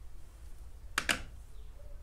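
Scissors snipping through acrylic yarn: two quick sharp clicks close together about a second in.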